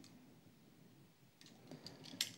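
Near silence, with a few faint small clicks near the end as a diecast toy car is handled in the fingers.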